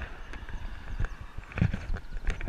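Wind rumble on a bicycle-mounted camera riding along a road, with a few irregular knocks as the bike jolts over the surface.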